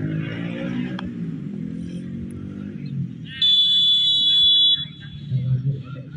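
Spectators' voices and chatter, then a loud, steady referee's whistle blast lasting about a second and a half, starting about three and a half seconds in, the signal for the penalty kick to be taken.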